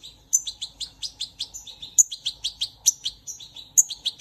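A fledgling songbird chirping in a quick, continuous run of short high chirps, several a second, a few of them louder than the rest.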